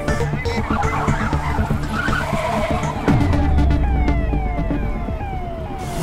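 A car's tyres skidding on a wet road as it brakes hard, about a second in. This sits over a tense film score with a repeating falling synth figure. About three seconds in, a deep falling boom settles into a low drone.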